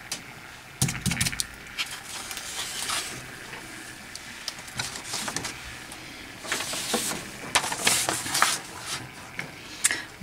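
Handling noises on a craft table: sheets of paper being lifted, shifted and rustled, with a few light knocks and taps, the rustling heaviest late on.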